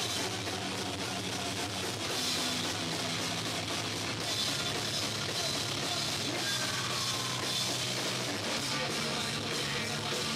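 Live punk-rock band playing: drum kit, electric guitar and bass running on without a break. It was recorded through a Hi-8 camcorder's own microphone, so the sound is distorted.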